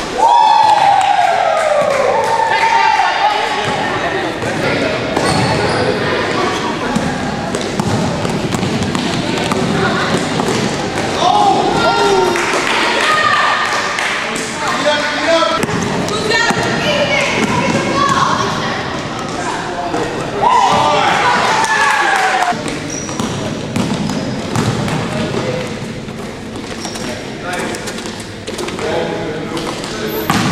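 Basketball game in a gym: a ball bouncing on the hardwood floor amid repeated knocks and thuds, with voices of players and onlookers calling out, echoing in the hall.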